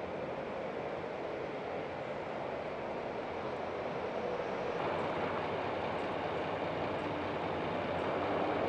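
Steady wash of city road traffic from buses and cars, with no clear single event; about five seconds in it steps up slightly louder.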